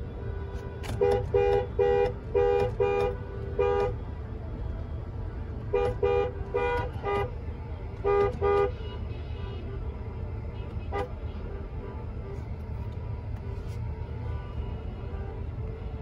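Two-note car horn honking in quick runs of short toots: a burst of about six beeps in the first few seconds, two more runs a few seconds later, then a single short toot, over the low steady rumble of a car heard from inside the cabin.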